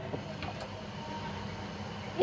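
Whole spices frying gently in warm oil in a wok, a faint steady sizzle over a steady low hum.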